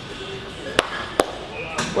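Two sharp knocks about half a second apart, over steady gym room noise.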